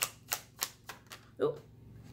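A deck of fortune-telling cards being shuffled by hand: a quick run of crisp card clicks, about four a second, that stops about a second and a half in.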